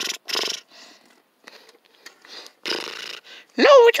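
A voice making a string of short, breathy, growly play noises, then shouting "No" near the end.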